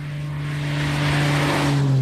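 A 1938 BMW 328's two-litre straight-six running steadily as the roadster approaches and passes close by. It grows louder with a rush of wind and tyre noise, and its note drops in pitch as it goes past near the end.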